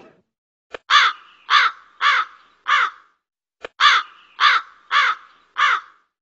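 A crow cawing: two runs of four caws about half a second apart, each run opened by a short click, with dead silence between.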